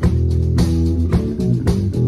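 Acoustic guitar strumming chords over a fretless electric bass playing held low notes, in an instrumental passage without vocals.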